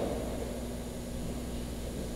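Room tone in a pause between sentences: a steady low hum with a faint steady tone above it and light hiss, and no other events.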